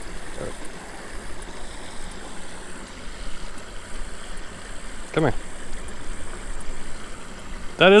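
Creek water running steadily over a small concrete spillway, a continuous rushing hiss.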